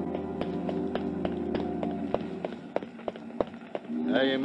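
A music bridge fading out while radio sound-effect footsteps come up, hurrying at about three steps a second.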